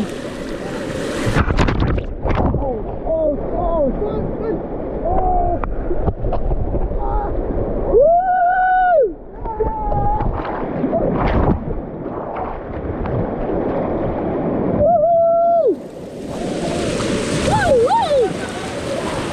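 Swollen, fast floodwater rushing and splashing close by, with people shouting and calling out over it. There are two drawn-out yells, about eight and fifteen seconds in.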